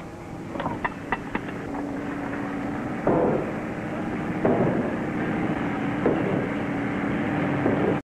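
A machine running with a steady hum, over a steady hiss. Four quick knocks come in the first second and a half, and louder surges follow about every second and a half.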